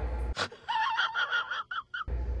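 A man's high, strained gasping vocal sounds, six or seven short broken pieces in a row, starting about two-thirds of a second in. Before them a steady low hum cuts off suddenly.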